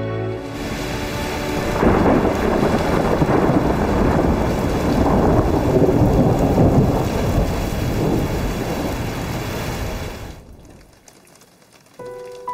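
Heavy rain with a long rumble of thunder, swelling about two seconds in and fading out near the end.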